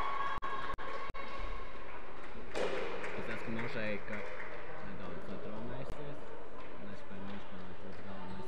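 Indistinct voices echoing in a large indoor sports hall over steady room noise. There are three brief dropouts in the sound within the first second or so.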